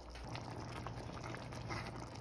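Meatballs in tomato sauce simmering in a stainless steel pot, small bubbles popping irregularly, over a steady low hum.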